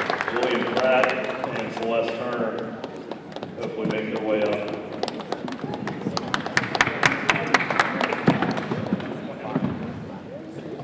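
Audience clapping: a loose run of separate hand claps that thickens in the second half, with voices from the room over the first half.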